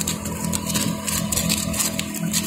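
Shrimp pond aerator running: a steady motor hum with water splashing and churning.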